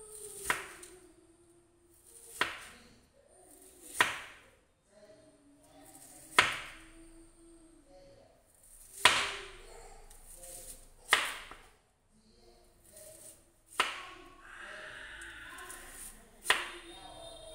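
Kitchen knife slicing through fresh bamboo shoots onto a plastic cutting board: about seven separate cuts, one every two seconds or so.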